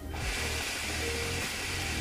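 A long steady draw on a hookah: air hissing through the hose and the ice-pack mouthpiece for about two seconds, with background music underneath.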